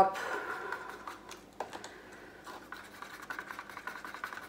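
Wooden craft stick stirring acrylic paint in a plastic cup, scraping and tapping against the cup's sides, working silicone oil through the paint.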